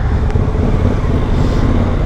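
Suzuki V-Strom motorcycle riding slowly in city traffic: a steady low engine and road rumble, with the surrounding traffic.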